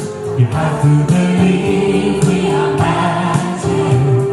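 A man singing into a handheld microphone over accompanying music, with massed, choir-like voices in the mix.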